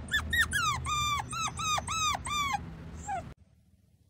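Puppy whining: a quick run of high whines, about three a second, then two shorter falling ones as it tails off after about three seconds.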